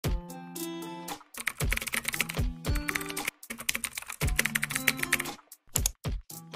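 Computer keyboard typing sound effect in two quick runs of clicks over a short, upbeat intro tune with a bass beat.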